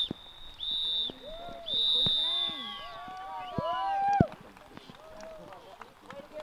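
Referee's whistle sounding in blasts, a short one and then a longer one after a first blast ending at the start, the pattern typical of the full-time signal. High children's voices shout and call out over and after the last blast.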